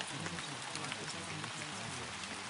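Steady rain with scattered drop ticks, with low, overlapping voices speaking underneath it, the layered affirmations of a subliminal track.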